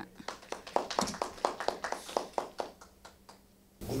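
Applause from a small audience: scattered hand claps that thin out and die away after about three seconds.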